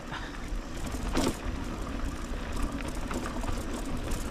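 Mountain bike rolling downhill on a dry dirt trail: tyre noise on loose dirt and the bike rattling over bumps, with a sharper clatter about a second in. A low wind rumble sits on the microphone throughout.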